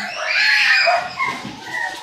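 A dog whining, with a few high, arching cries.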